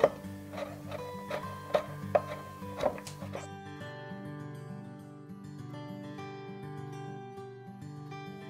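Chef's knife chopping galangal on a wooden cutting board, about seven quick chops in the first three seconds, then stopping. Soft background music plays throughout and carries on alone after the chopping.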